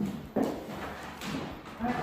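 Footsteps on a bare hardwood floor, with a couple of sharp knocks near the start and a faint voice near the end.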